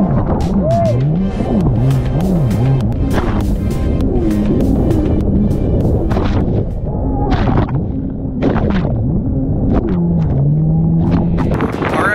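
Kawasaki 750 SXi Pro stand-up jet ski's two-stroke twin engine running hard, its pitch dropping and climbing again over and over as the craft pounds through chop, with water spray splashing. The constantly changing revs come from the rough water, which keeps the machine from getting up to speed.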